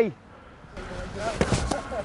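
Gaelic footballs thudding on an artificial pitch, with two sharp ball strikes close together about a second and a half in, over faint distant voices.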